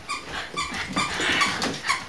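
A small white dog giving a quick string of short, high-pitched yips and whines, excited at someone arriving.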